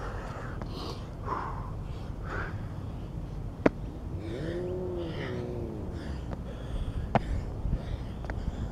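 A man breathing hard in repeated heavy puffs while doing burpees with push-ups, with a drawn-out groan in the middle. A single sharp slap comes about three and a half seconds in, and a lighter one near the end.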